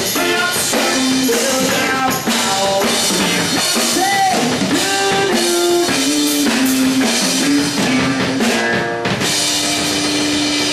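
A live rock band playing loudly, drum kit and guitar over a melodic line that bends from note to note, with one note held steady near the end.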